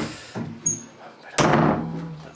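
Built-in closet door being handled: a sharp knock at the start, then the door shut with a loud bang about a second and a half in.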